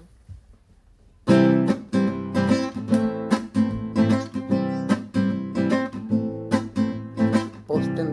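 Acoustic guitar strummed in a steady rhythm, the instrumental introduction to a song. It starts about a second in and goes on with evenly spaced chord strums, two or three a second.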